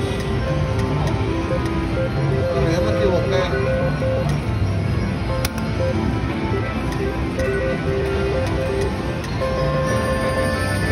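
Slot machine playing its electronic spin music, short repeated tones, while the reels spin. The tones run over the hubbub of a casino floor.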